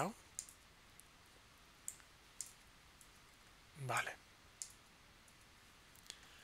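A few faint, irregularly spaced clicks from a computer keyboard and mouse while code is being edited.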